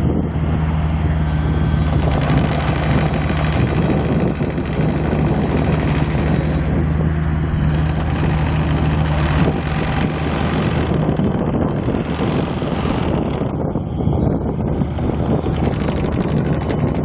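2014 Bobcat E26 mini excavator's Kubota three-cylinder diesel engine idling steadily.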